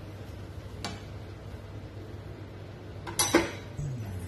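Metal cookware clattering on a gas stovetop: a light click about a second in, then a louder clink just after three seconds, over a steady low hum.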